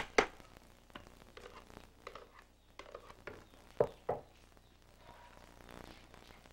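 Scattered sharp knocks and clatter of a split bamboo pole working in a large wok of boiling soy milk, several irregular strikes with the loudest about four seconds in, over a faint background hiss.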